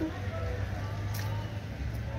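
Outdoor background of faint distant voices over a steady low rumble, with a light tap about a second in.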